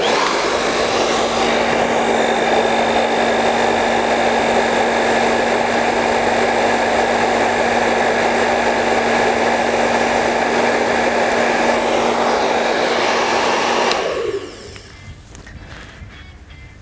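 Handheld hair dryer with a concentrator nozzle running on its cold setting, a loud steady blow with a constant motor hum. It is switched off about 14 seconds in and the sound dies away over about a second.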